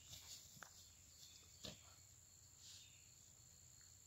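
Near silence with a steady high-pitched chirring of insects such as crickets. A few faint short rustles or taps cut in, the clearest about a second and a half in.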